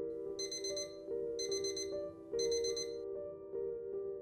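Digital alarm clock going off: three bursts of rapid, high-pitched beeps about a second apart, over soft piano music.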